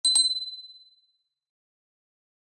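Notification-bell sound effect from a subscribe animation: two quick clicks, then a single high ding that dies away within about a second.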